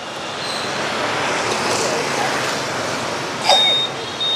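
Street traffic of motorbikes: a steady wash of engine and tyre noise that swells as a motorbike passes, with a short high-pitched beep near the end.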